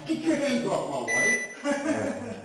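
Muffled voices from a security camera's audio, with one short electronic beep about a second in, typical of a metal detector alerting on a metal leg brace.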